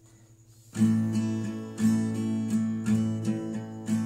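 Acoustic guitar strummed in a down, up, down, down, up, down pattern. The strumming starts a little under a second in, after a brief near-silence.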